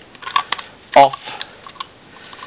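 A few short scratches and clicks as a utility knife blade scrapes the shaggy burrs off the inside edge of a cut ring of black plastic polypipe.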